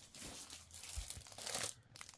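Plastic packaging crinkling as it is picked up and handled, in irregular crackly rustles.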